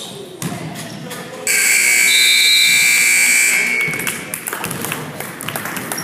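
Gymnasium scoreboard buzzer sounding one steady electronic tone for about two seconds, starting about a second and a half in, as the game clock runs out to end the first half. Voices and a few sharp knocks come before and after it.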